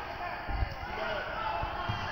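A basketball being dribbled on a hardwood gym floor, three uneven bounces, the first about half a second in and two close together near the end.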